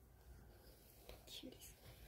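Near silence with one word whispered about a second in.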